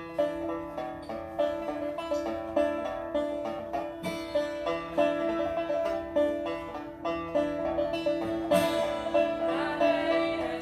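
Banjo and acoustic guitar playing a folk tune together, starting suddenly at the opening, with picked notes over a steady held drone note.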